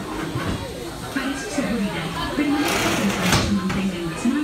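Indistinct voices in a large indoor space, with a brief hiss about three seconds in.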